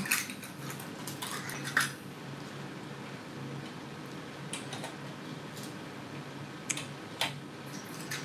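Metal nail drill bits clicking and clinking as they are picked out of a small clear cup and pushed into the holes of a plastic bit organizer. The clicks are scattered and light, with the sharpest about two seconds in.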